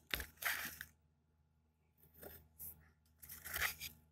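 Three short bursts of scraping and rustling handling noise, one soon after the start, one around the middle and one near the end.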